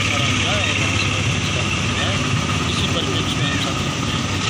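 A vehicle engine idling steadily close by, with faint background chatter of people.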